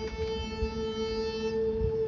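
Starting pitches for an a cappella song, given on a pitch pipe and held by voices: a steady note, with a lower note joining just after the start and dropping out near the end.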